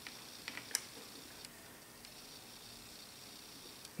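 A few faint, light metallic clicks of steel chuck keys working the jaw screws of a four-jaw lathe chuck, heard in the first second and a half over quiet room tone.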